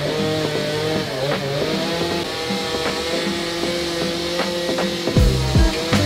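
Gas chainsaw running at high revs with a steady whine, its pitch sagging briefly about a second in.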